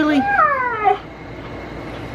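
A husky 'talking' from inside her crate: one short yowling vocalization about a second long whose pitch rises and then slides down. She is complaining at being kept shut in the crate.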